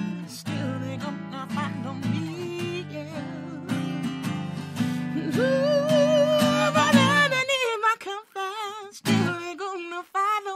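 Live acoustic guitar strummed in chords under a singing voice that holds a long, wavering note from about five seconds in. The guitar stops briefly near the end while the voice carries on, then comes back.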